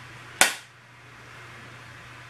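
A single sharp click about half a second in, then a faint steady low hum.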